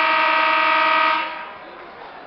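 Gym scoreboard horn giving one long, steady blast that stops a little over a second in, signalling that time has run out in the wrestling period.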